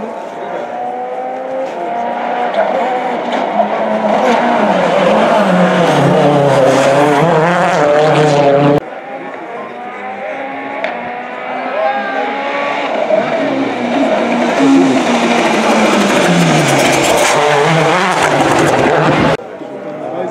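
Two World Rally Cars' 1.6-litre turbocharged four-cylinder engines at full stage pace, each approaching and passing with revs rising and falling through gear changes. The first cuts off abruptly about nine seconds in, and the second just before the end.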